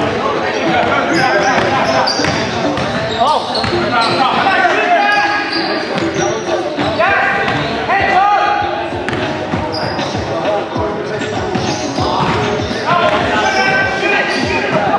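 Basketball bouncing on a hardwood gym floor during play, with players' voices calling out and the echo of a large gym hall.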